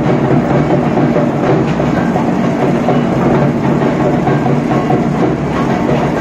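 Loud, dense procession drumming and music going on without a break, with a steady low hum beneath it.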